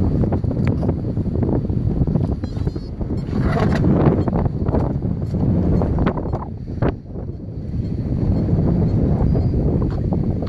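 Wind buffeting the microphone, a steady low rumble, with a few light knocks from handling.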